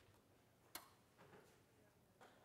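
Near silence broken by a sharp click a little under a second in and a fainter knock shortly after, from lab apparatus being handled on a bench.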